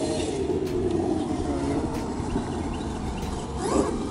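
Traxxas X-Maxx electric RC monster truck driving across grass, its motor and drivetrain whining and wavering in pitch with the throttle. A brief sharp rise and fall in pitch comes just before the end, the loudest moment.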